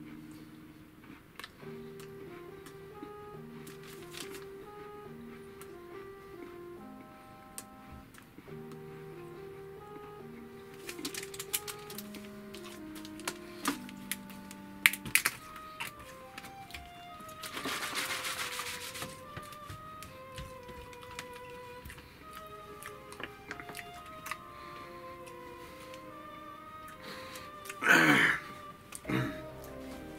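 Background instrumental music, a melody of single held notes, runs throughout. Between about 11 and 16 seconds in, sharp clicks come from the screw cap of a plastic drink bottle being twisted. About 18 seconds in there is a brief hiss.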